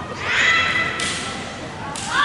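High-pitched kiai shout from a female naginata performer, swooping up in pitch and held for most of a second. A sharp knock follows about a second in, and another rising shout begins right at the end.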